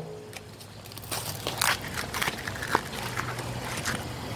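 A cigarette pack being torn open by hand: irregular crackles and crinkles of the wrapper and paper, over a low steady hum.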